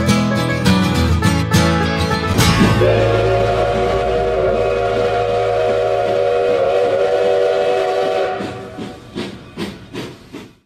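Bluegrass music with banjo and guitar that stops about two and a half seconds in, followed by a steam locomotive whistle held steadily for about five seconds and then fading away.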